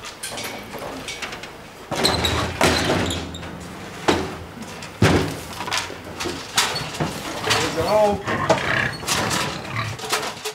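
Pigs in a metal livestock trailer, with loud sudden bursts of animal noise about two, four and five seconds in.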